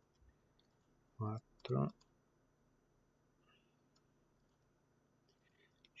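Faint computer mouse clicks, with a short spoken word in two quick parts about a second in.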